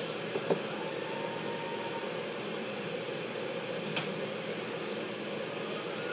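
Steady, even hiss from a grilled cheese sandwich frying in a pan on the stove, with two light clicks of a spatula against the pan, one about half a second in and one near the middle.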